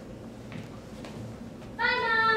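Low room noise, then near the end a sudden loud, high, steady held vocal tone from a child.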